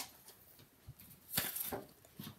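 Handling noise of a plastic paper trimmer being picked up and moved over a cutting mat: a soft low knock about a second in, then a brief rustle and clatter.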